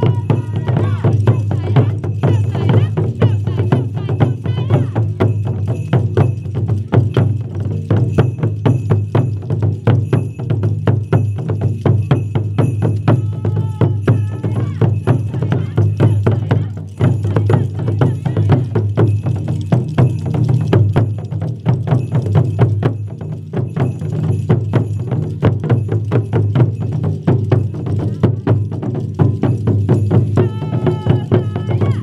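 Japanese taiko ensemble drumming: barrel-shaped taiko drums on stands and a rope-tensioned okedo drum beaten with wooden bachi sticks in a fast, driving rhythm, with wooden clappers clacking along.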